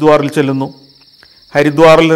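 A man talking in Malayalam, pausing for nearly a second in the middle, over a steady high-pitched trill of crickets.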